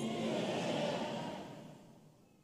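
Faint, even ambience of a large auditorium, the hall's murmur and echo between phrases, fading away to silence near the end.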